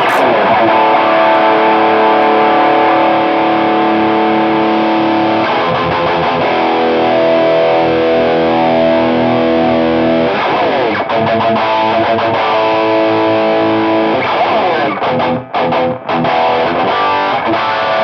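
Electric guitar with a heavy, distorted metal tone, played through the reference amp rig that is being profiled. It holds sustained chords for about the first ten seconds, then plays shorter, choppier chords with brief gaps near the end.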